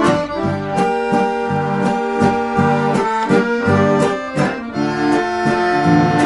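Accordion music: sustained chords and melody over a steady, regular bass beat.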